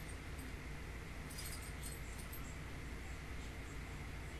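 Steady low room hum and hiss, with a brief faint jingle of light metallic clicks a little over a second in.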